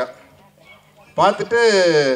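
After a short pause, a man's voice through a handheld microphone makes one drawn-out vocal sound, about a second long, that slides down in pitch.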